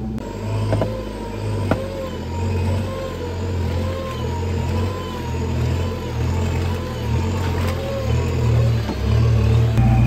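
Nissan Patrol's diesel engine running in swamp mud, its revs rising and falling unevenly, with music playing underneath.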